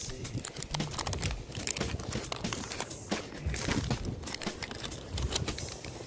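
Wrapper of a 1991 Fleer football card pack being torn open and crinkled by hand: a run of irregular crackles.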